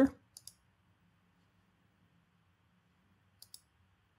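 Two faint pairs of computer mouse clicks, one just after the start and one near the end, with near silence between them.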